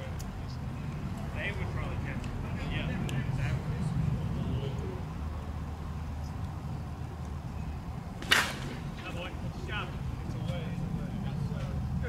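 A softball bat striking a pitched slowpitch softball: one sharp crack about eight seconds in, over a steady low rumble of ballpark noise and faint distant voices.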